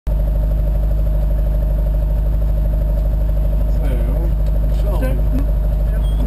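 Rally car engine running steadily at a standstill, heard loud and low from inside the cabin.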